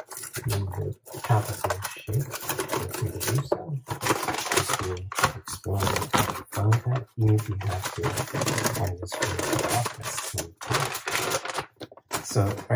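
A voice talking indistinctly, over a run of sharp clicks and rustling as a plastic bag and kitchen items are handled on a stone counter.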